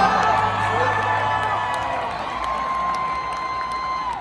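Large arena crowd cheering and whooping over music. The cheering is loudest at the start and slowly eases off.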